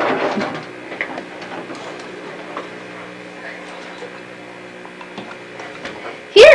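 Camera handling noise: a rustle and knock as the camcorder is moved at the start, then a steady low electrical hum with a few faint clicks.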